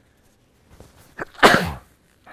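A man sneezing into a tissue: a few faint short sounds, then one loud sneeze about one and a half seconds in.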